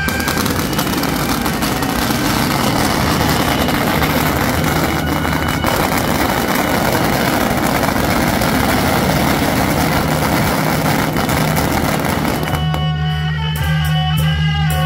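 A long string of firecrackers going off in a rapid, unbroken crackle of bangs. It stops suddenly about twelve and a half seconds in, where music takes over.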